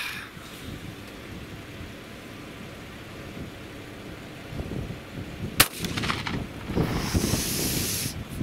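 A single shot from an old single-barrel 12-gauge shotgun, one sharp crack about five and a half seconds in.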